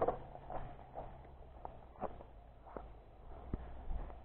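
Diamondback Edgewood hybrid bike on a leaf-litter forest trail: irregular light knocks and rattles, about two a second, over a faint low rumble that fades about halfway through.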